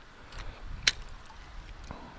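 A single sharp click about a second in, over a faint low rumble.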